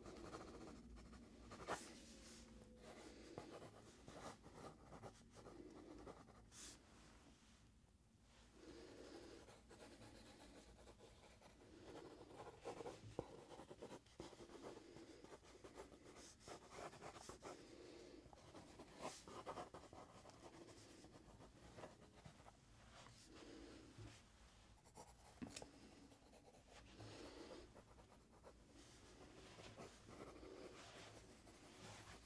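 Pencil sketching on a paper sketch pad: quiet scratchy strokes in short runs, with a few sharp clicks along the way.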